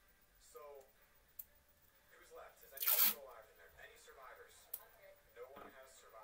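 Indistinct, low voices talking, with one brief loud hiss of noise about halfway through and a couple of sharp clicks.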